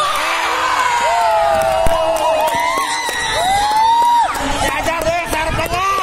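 Crowd of young spectators and players shouting and cheering during a volleyball rally, many high voices overlapping, with one long drawn-out shout near the middle. A single sharp knock comes about two seconds in.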